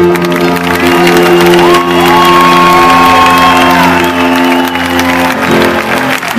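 The final keyboard chord of the song held and ringing out under crowd cheering and applause, with a long high note over the top from about two seconds in. The chord stops about five and a half seconds in.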